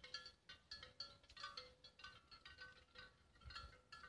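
Faint, irregular clinking of bells on grazing livestock, many short ringing notes at a few fixed pitches as the animals move and feed.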